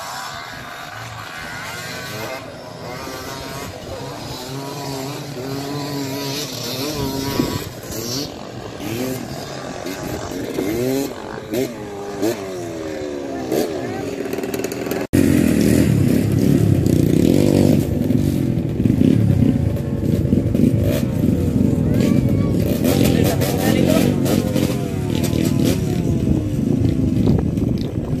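Dirt bike engines revving up and down in the distance, their pitch rising and falling again and again. After a sudden break about halfway through, a dirt bike engine runs much louder and close by.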